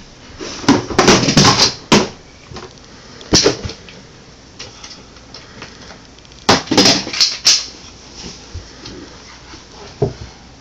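Plastic toys and a plastic toy bin clattering and knocking as a toddler handles them, in three quick bunches of sharp knocks.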